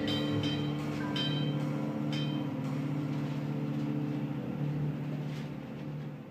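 Two saxophones holding long, low sustained notes, with a few struck notes ringing out above them in the first couple of seconds.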